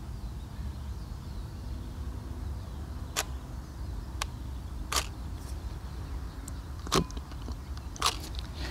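Nikon D90 DSLR on a tripod firing a bracketed pair of exposures on its self-timer with exposure delay: four separate sharp clicks of the mirror and shutter, about three, four, five and seven seconds in, over a steady low rumble.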